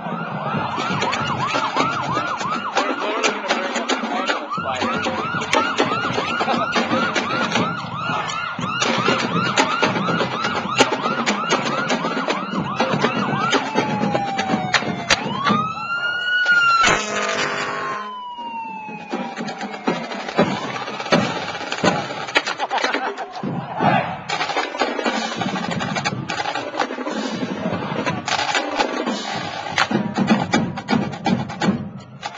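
Fire truck siren in a fast warbling yelp for about the first half, then changing to a slower rising and falling wail with a short steady horn blast in the middle, over a marching snare drum line playing throughout.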